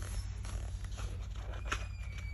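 Quiet room tone with a steady low hum, and the faint sound of hands resting on a paperback book's paper pages, with one soft tick about three-quarters of the way through.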